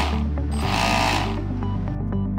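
Background music with two short bursts of a 1000kv brushless motor whirring up as the throttle is blipped: a brief one at the start and a longer one of under a second just after.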